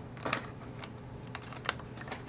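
Light plastic clicks and taps from fingers handling the AirPort card's antenna cable and the plastic parts inside an opened iBook G3 clamshell laptop. There are a handful of separate clicks, with the sharpest one late on.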